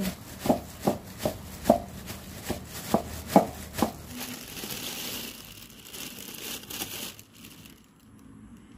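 Stone pestle pounding chillies in a granite mortar under a plastic bag cover, sharp strikes about two or three a second for about four seconds. Then the plastic bag crinkles as it is handled for about three seconds.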